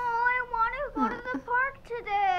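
A young girl's wordless, high-pitched whimpering and moaning: one drawn-out wavering groan, then several shorter ones that bend up and down in pitch. It is the sound of a child in discomfort from tummy cramps.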